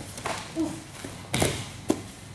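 Grappling scuffle on padded gym mats: bare feet and bodies shifting and thudding on the mat, with two sharp slaps or thumps in the second half as a training partner is taken down.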